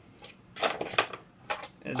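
A few light clicks and knocks as plastic action figures are picked up and set down on a hard surface.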